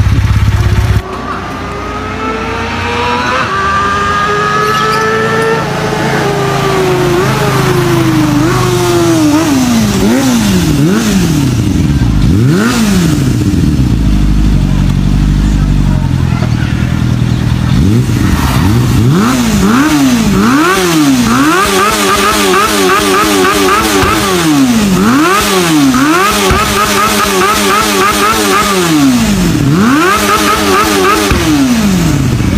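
A Suzuki sport motorcycle's engine being revved while standing still. The pitch first climbs gradually, then rises and falls sharply in repeated throttle blips, roughly one a second through the second half. Another motorcycle engine fills the first second and cuts off abruptly.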